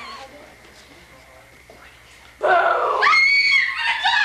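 A girl's sudden loud, high-pitched scream about two and a half seconds in, jumping higher in pitch about half a second later and held to the end.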